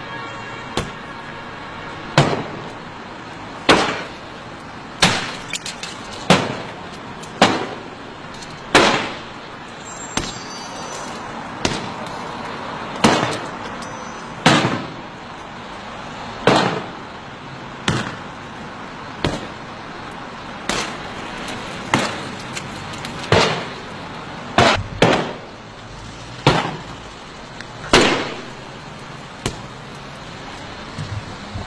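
A Mercedes-Benz S63 AMG's body panels and glass being smashed by repeated heavy blows. There are about twenty sharp crashing strikes, roughly one every second and a half.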